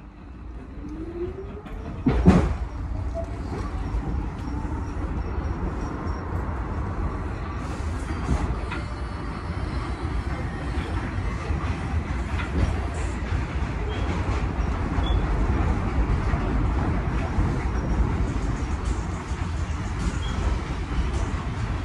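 R46 subway car pulling away from a station, its motors whining upward in pitch as it gathers speed, with a loud clunk about two seconds in. It then settles into a steady rumble of wheels on the elevated track.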